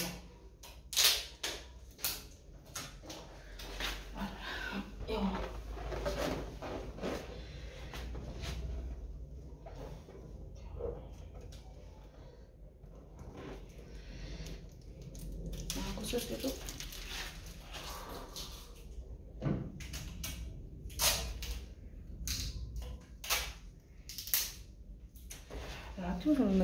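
Handling noises of party decorations being put up: scattered clicks, taps and rustles throughout, with some faint muttering.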